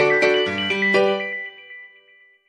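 Background music: a bright melodic phrase of distinct notes that ends about halfway through, its last notes ringing and fading away.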